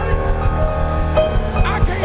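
Live church worship music from a band with keyboard and a steady bass line under sustained chords, with a singer's voice gliding in near the end.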